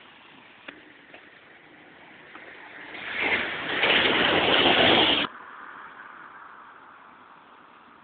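A single-decker bus passing close by. Its engine and tyre noise builds, is loudest for about a second and a half, then cuts off abruptly a little over five seconds in, leaving a fainter hum as it drives away.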